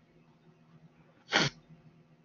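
A person's single short, sharp burst of breath, like a stifled sneeze or forceful exhale, past the middle of an otherwise quiet stretch.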